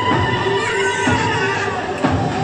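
Turkish folk dance music for a yanbağlama halay: a held melody line with short wavering ornaments over a steady beat.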